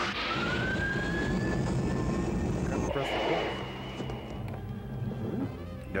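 Sci-fi film sound effect of a spaceship engine: a whine rising slowly in pitch over a steady low rumble. About three seconds in it breaks off into a steady higher tone, while the rumble carries on.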